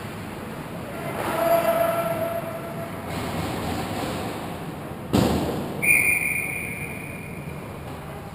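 Echoing indoor ice rink ambience of skates and play. A sharp knock about five seconds in, then a referee's whistle blown once, a steady high tone that fades over about a second and a half, stopping play.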